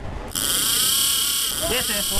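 Game-fishing reel's drag screaming: a sudden, steady high whine starting under half a second in, the sign of a fast fish (taken for a Spanish mackerel) striking the trolled mullet bait and stripping line. A voice calls out near the end.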